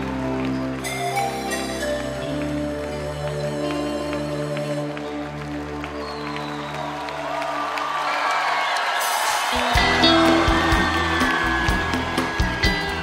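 A rock band's long held closing chord dies away over the first eight seconds or so. The arena crowd then cheers and applauds, and a run of low thumps starts up near the end.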